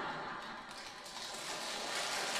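Faint applause from a seated audience, an even spread of clapping that swells a little near the end.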